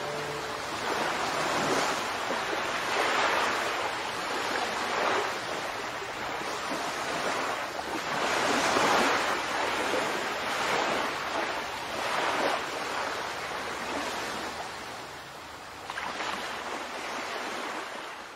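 Sea waves washing onto a shore, each surge swelling and falling back every two or three seconds.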